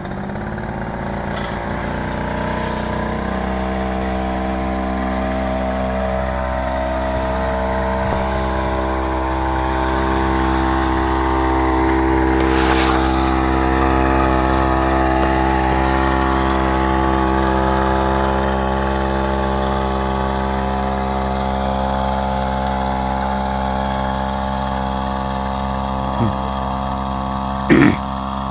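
Small gasoline engine of a backpack power sprayer running steadily at high speed while it sprays, picking up speed about three seconds in and building in level over the first ten seconds. Two short knocks come near the end.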